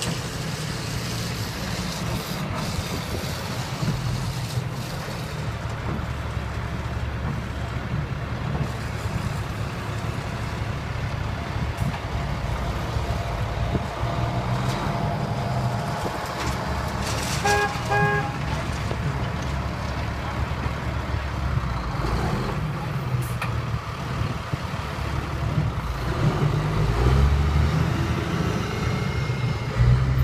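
Heavy truck engine running steadily with a deep low-pitched sound and street traffic around it. About seventeen seconds in, a pitched horn gives a few quick toots.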